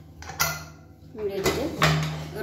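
Stainless steel pressure cooker lid being fitted onto the cooker and worked into place: metal clanks and scrapes, with sharp ringing knocks about half a second in and twice near the end.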